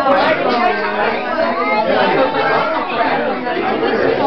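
Several people talking over one another: indistinct party chatter.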